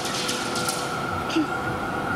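A Melbourne A2-class tram pulling away along the track, its running noise steady with a faint steady tone and a few light clicks in the first second.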